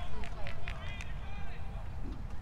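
Indistinct distant shouts and calls from soccer players and sideline spectators, a few sharp calls about half a second to a second in, over a steady low rumble.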